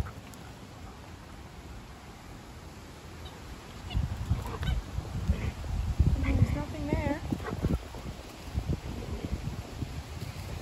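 Wind buffeting the microphone in gusts from about four seconds in, with a short wavering animal call, like a whine, a few seconds later.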